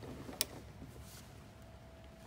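A single sharp metallic click about half a second in from a hand driver working the small Allen screws on an A/C expansion valve, with faint scraping of the tool over a quiet background.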